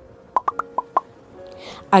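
A musical transition effect: five quick, short pitched pops in the first second, over a faint steady background tone, then a soft whoosh just before speech resumes.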